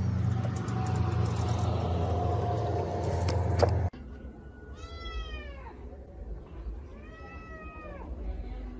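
A steady low hum with background noise, ending in a sharp click and an abrupt cut about four seconds in. Then a cat meows twice, each call rising and then falling in pitch, the second about two seconds after the first.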